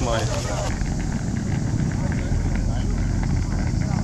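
A word of speech at the very start, then steady outdoor noise with a heavy low rumble from about a second in.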